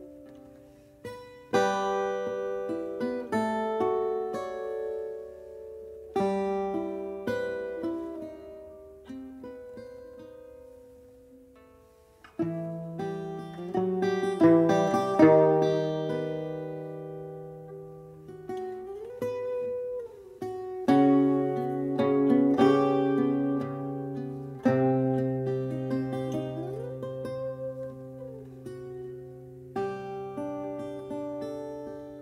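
Portuguese guitar and classical guitar playing together, plucked notes ringing and dying away. The music thins to almost nothing about twelve seconds in, then returns fuller, with a couple of notes sliding in pitch later on.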